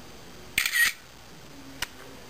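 iPod Touch (4th generation) camera app's shutter sound played through the device's speaker about half a second in, signalling that a photo has been taken. A single short click follows near the end.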